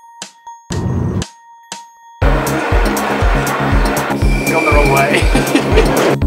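Background electronic music: a short burst of noise over a faint held tone, then about two seconds in a steady, loud deep beat kicks in with a dense layer of sound over it.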